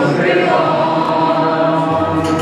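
A group of voices singing together, holding long, steady notes.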